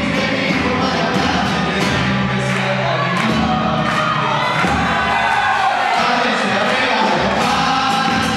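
Live band playing a murga song: several voices singing together over guitars, keyboard and a steady drum beat, with audience crowd sound underneath.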